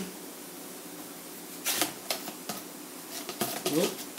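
Light clicks and taps of metal protractor parts being handled against a plastic tub: a cluster of them about two seconds in, and a few more near the end.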